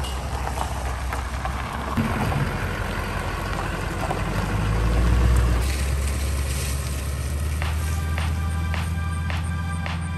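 Pickup trucks towing horse trailers drive past, a steady low engine and tyre rumble that swells to its loudest about five seconds in as one passes close.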